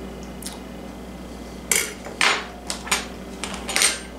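Metal utensils clinking and scraping against a stainless steel mixing bowl of mashed potatoes. There are about half a dozen short scrapes and knocks, starting a little under two seconds in and coming closer together near the end.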